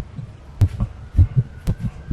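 A quick heartbeat sound effect: low thumps in lub-dub pairs, about two beats a second, with a sharp click or two between them.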